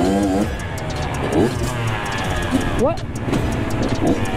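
Two-stroke Kawasaki KX112 dirt bike engine running at low speed, its pitch rising and falling with the throttle, with other dirt bikes idling close by.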